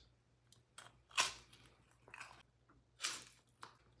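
Biting and chewing crisp freeze-dried orange slices: three crunches about a second apart, with faint clicks between.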